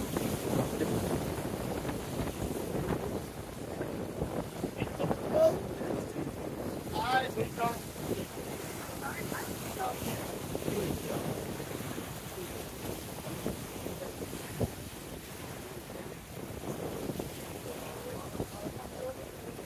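Wind buffeting the microphone over choppy waves washing against the rocks of a pier. A brief voice is heard in the background about seven seconds in.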